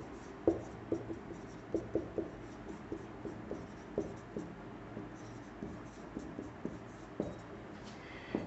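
Marker pen writing on a whiteboard: faint, short, irregular strokes and taps as an equation is written out, easing off near the end.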